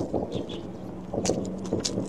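Close-miked chewing of a mouthful of spicy fried rice noodles: quick, irregular wet smacks and crackles from the mouth.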